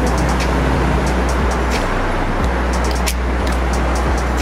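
Road traffic noise along a busy multi-lane street, with a heavy steady rumble of wind on the phone's microphone.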